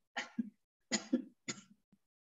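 A person coughing, three short coughs in about a second and a half, heard over a video-call line with dead silence between them.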